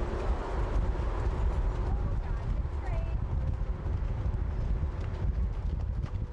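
A horse cantering on a sand arena, its hoofbeats coming as dull, uneven thuds over a steady low rumble, with indistinct voices in the background.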